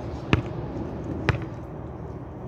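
A volleyball bouncing twice on hard ground, about a second apart: two sharp smacks.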